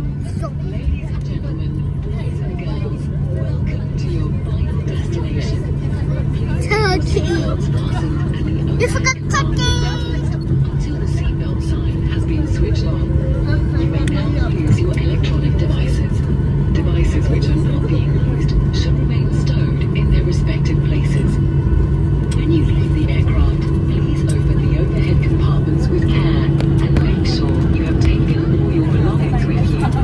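Steady engine hum heard inside the cabin of a passenger jet rolling along the ground at an airport, growing slightly louder, with passengers' voices in the background.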